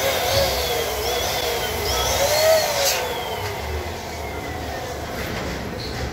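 Electric balloon pump running steadily while inflating a balloon, with squeaky rising-and-falling glides from the rubber balloons being stretched and handled in the first few seconds.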